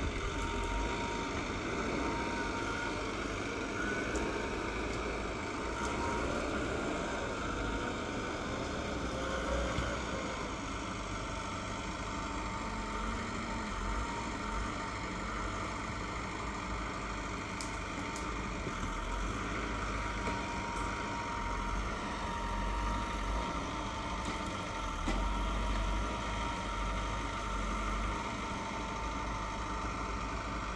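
Small forestry forwarder's diesel engine running steadily while its crane works, with a thin steady whine above the engine note. The pitch shifts slightly now and then as the load changes.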